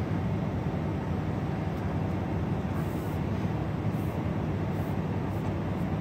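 Steady low hum and hiss of a running vehicle, heard from inside, with a few faint, brief swishes of paracord being drawn through a woven bracelet about halfway through.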